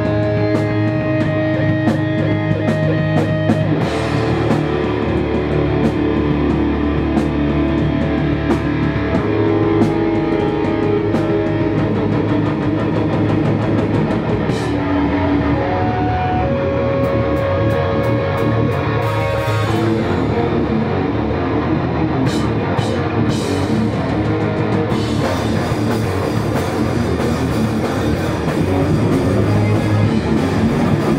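Hardcore punk band playing live: distorted electric guitars and bass over a drum kit, loud and steady, with the cymbals denser and brighter near the end.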